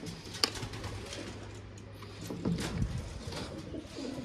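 Pigeons cooing in low, repeated calls, with a sharp knock about half a second in.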